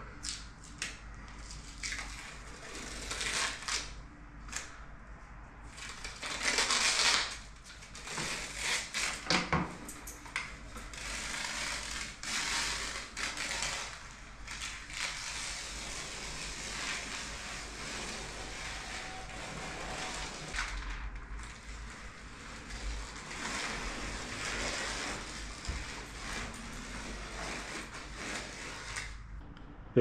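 Painter's tape being peeled off the freshly painted wall along the ceiling line and trim: a crackling, tearing sound that comes in several longer pulls.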